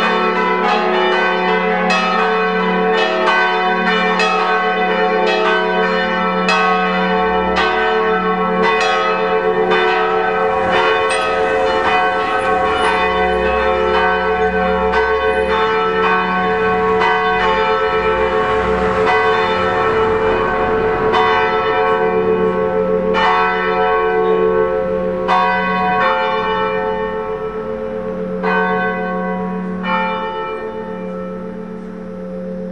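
Festive peal of five swinging church bells in Senigallia Cathedral's bell tower, hung for half-swing ringing (a mezzo slancio). Their strikes overlap in a dense, continuous ringing, with the smallest bell's light strikes barely audible under the larger bells. Near the end the strikes thin out and the ringing starts to die away.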